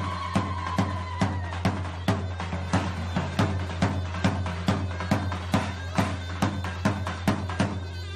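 Davul, the large Turkish double-headed bass drum, beaten at an even pace of about three strokes a second. A zurna plays over it, its held reedy note clearest in the first second. This is the davul-zurna pair of Turkish folk dancing.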